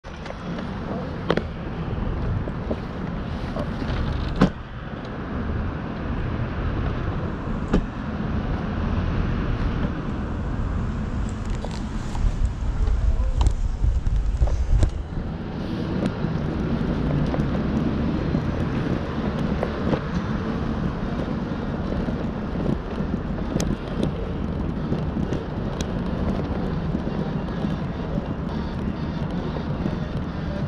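City street traffic noise, a steady low rumble that swells louder for a few seconds around the middle, with several sharp clicks or knocks scattered through it.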